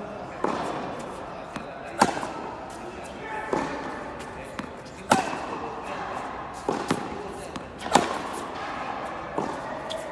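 Tennis ball struck by rackets in a hard-court practice rally: sharp pops about every second and a half, the loudest roughly every three seconds, with softer bounces of the ball on the court between them.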